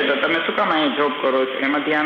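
A man lecturing in a steady, unbroken stream of speech; only his voice is heard.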